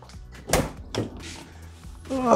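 A sharp knock about half a second in and a softer one about a second in, over quiet background music.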